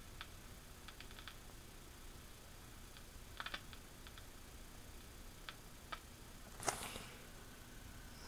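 Faint, scattered light clicks and ticks over a low steady background hum, with a brief louder rustle about two-thirds of the way through.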